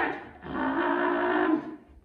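A held, steady-pitched vocal 'mmm' thinking sound in a puppet character's voice, lasting about a second, as the character deliberates over which card to pick.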